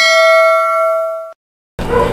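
A notification bell chime sound effect: one bright ding with a ringing tone that holds for over a second and then cuts off abruptly.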